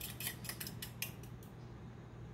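Eggs being beaten in a bowl with a utensil: a quick run of light clicks of metal against the bowl, about seven a second, that stops about a second and a half in.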